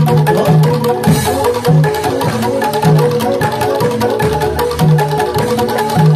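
Live Javanese gamelan accompaniment for a hobby-horse dance: metal-keyed mallet instruments ringing a repeated melody over low notes from a kendang hand drum. A brief sharp crack cuts through about a second in.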